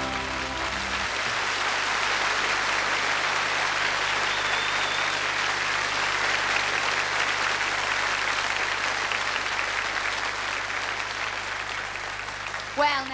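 Studio audience applauding steadily after the orchestra's final chord dies away about a second in. The applause eases slightly near the end over a steady low hum.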